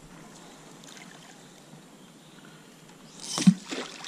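A feeder being reeled in across the river surface, splashing several times in quick succession near the end after a quiet stretch.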